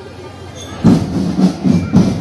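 Marching drum band: after a brief lull, the band comes in loud a little under a second in, drums beating a steady rhythm of about three to four strokes a second.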